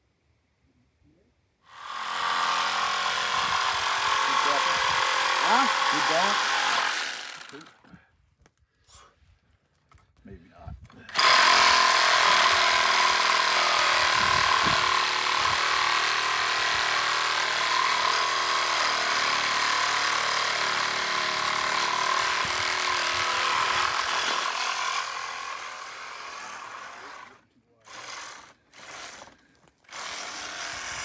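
Handheld cordless power tool running on a metal ATV axle part in two long runs of steady, loud motor-and-cutting noise, fading away after the second, then two short bursts near the end.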